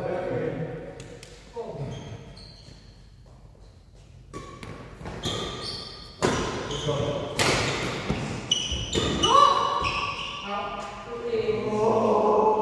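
Badminton rally in a large hall: a string of sharp racket-on-shuttlecock strikes, most of them between about four and ten seconds in, among short squeaks of shoes on the court floor, with players' voices near the start and end.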